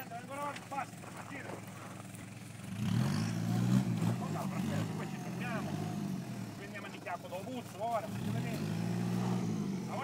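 Toyota Land Cruiser Prado 4x4's engine revving under load as it crawls up a steep dirt slope. It rises and falls in pitch about three seconds in and again near the end.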